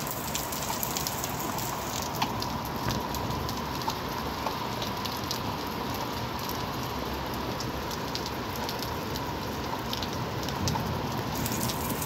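Heavy downpour rain falling: a steady hiss of rain, with many small ticks of individual drops striking surfaces close by.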